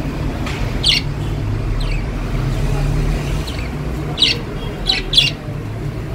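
Caged budgerigars giving about half a dozen short, sharp chirps, most of them in the second half, over a steady low hum.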